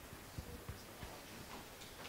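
Faint room tone with a few soft, low knocks in the first second, about a third of a second apart.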